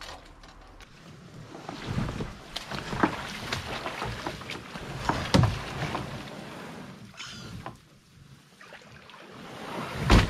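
Plastic kayak hull being dragged through tall grass and cattails, with irregular rustling, swishing and small scraping clicks from the hull and the brushed vegetation. A louder knock comes about five seconds in.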